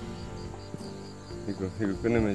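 An insect chirping: a high, evenly pulsed trill, several pulses a second, going steadily on.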